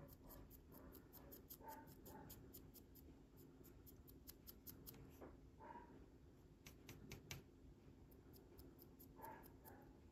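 Faint, rapid scratching ticks of a dry paintbrush's bristles flicking across a tiny painted model boat during dry brushing.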